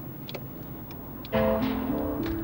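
Low rumble inside a moving car, with a light tick about every two-thirds of a second. About 1.3 s in, background music with sustained held notes comes in loudly.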